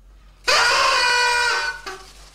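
Two party blowers blown together in one loud blast of about a second, several pitches at once, starting about half a second in and cutting off suddenly.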